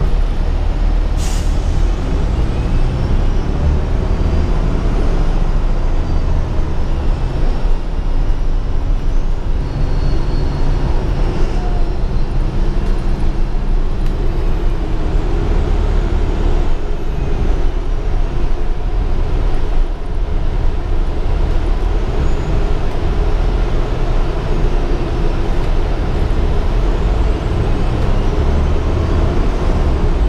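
Inside a 2015 Gillig Advantage transit bus under way: a steady engine and road rumble whose pitch shifts a little as it drives. There is a brief sharp hiss about a second in.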